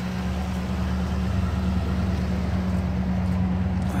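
Toyota Tundra's 5.7-litre V8 idling steadily, heard from the exhaust at the rear of the truck and getting a little louder about a second in.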